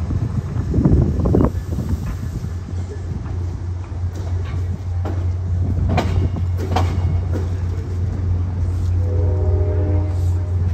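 Commuter-rail coaches rolling past a platform as the train pulls out, a steady low rumble with a few sharp clicks as the wheels cross rail joints. Near the end, a brief chord of several steady tones sounds.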